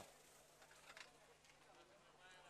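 Near silence: a faint steady low hum, with a couple of faint clicks about a second in.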